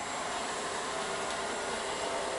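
Ecovacs Deebot N78 robot vacuum running steadily on a hardwood floor, a quiet, even suction hum.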